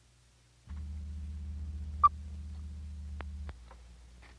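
A steady low electrical hum starts under a second in and cuts off near the end. Midway through comes a single short beep: the sync 'two-pop' of a film countdown leader. A couple of faint clicks follow.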